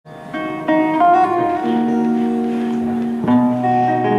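Solo acoustic guitar picking single notes that ring on, then a fuller chord struck about three seconds in.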